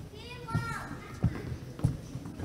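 A child's high voice calls out briefly in the first second. Two sharp thumps follow, the loudest sounds here: the footsteps of children filing across the stage and between the chairs.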